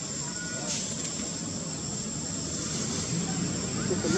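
Low steady rumble of a motor, growing louder toward the end.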